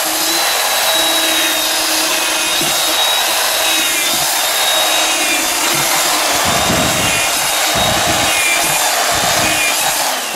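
Cordless drill running continuously with a long bit boring into a pumpkin's rind and flesh: a steady motor whine over rough grinding. About two thirds of the way through, a heavier low rumble joins as the bit chews deeper.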